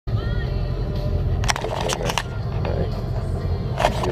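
Steady low rumble of a tow boat underway, picked up close on a handheld camera, with several sharp knocks from the camera being handled.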